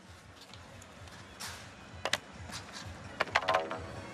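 Stadium background with faint music and a few scattered sharp claps or taps. A brief cluster of claps and a short pitched sound come near the end.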